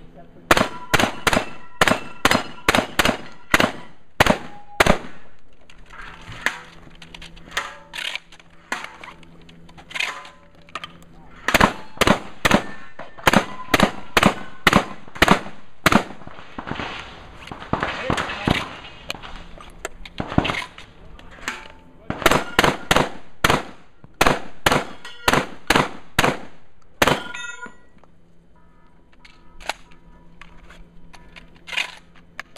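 Benelli shotgun fired in three fast strings of shots, about three a second, at steel targets that ring with a clang after hits. Between the strings come pauses of several seconds with small clicks and clatter while shells are loaded.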